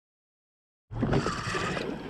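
Spinning reel being cranked against a fish on a bent rod, a whirring that repeats about three times a second with each turn of the handle, over wind on the microphone. It starts suddenly about a second in.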